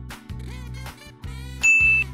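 Background music with a steady beat, then near the end a single bright ding chime, one clear high tone held about a third of a second and louder than the music, marking the answer reveal.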